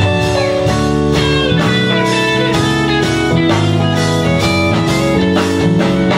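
Live band instrumental break: an electric guitar solo on a semi-hollow-body guitar over keyboard accompaniment, with no vocals.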